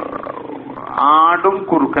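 A man speaking in a lecture, his voice louder and drawn out from about a second in.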